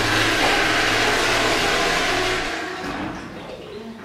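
Electric hand dryer running, a loud rush of air over a steady motor hum, which shuts off about two and a half seconds in and fades away.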